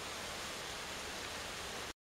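Steady background hiss with no flute tone, cutting off abruptly just before the end.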